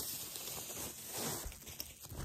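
Packaging rustling and crinkling as a handbag's chain strap is pulled out and unwrapped, with small irregular ticks from handling.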